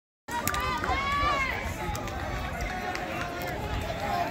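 Indistinct voices of spectators talking and calling out around the track, over a steady low rumble.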